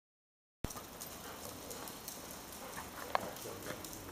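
Faint clicking of a Dalmatian's claws on a concrete floor as it moves about sniffing, with one sharper click about three seconds in.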